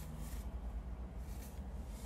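Low, steady rumble inside a parked car's cabin, with two faint brief rustles.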